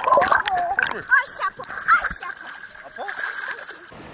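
Seawater splashing and sloshing right at a camera as it breaks the surface. The splashes are loudest and most broken up in the first two seconds, then settle.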